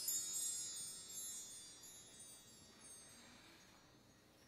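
High chimes ringing out and fading away, a cluster of many high bell-like notes dying down to near silence by the end.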